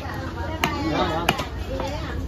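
Heavy cleaver chopping through orange snapper pieces onto a wooden log chopping block: sharp chops at a steady pace, about one every two-thirds of a second.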